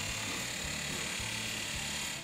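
Abrasive chop saw cutting through steel frame stock: a steady, hissing grind from the wheel biting the metal, with a thin high whine held over it.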